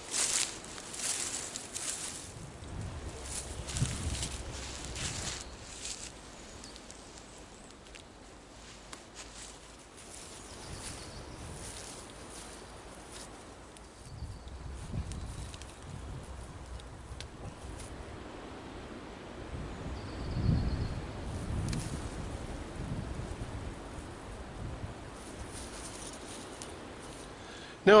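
Rustling and handling noise from setting up a tarp: footsteps through grass and leaf litter and fabric being handled, busiest in the first few seconds, with occasional low rumbles.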